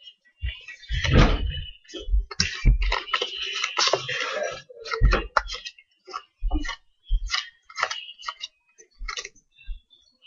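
Playing cards handled and dealt onto a wooden tabletop: a dense run of papery snaps and taps in the first half, then separate taps as single cards land.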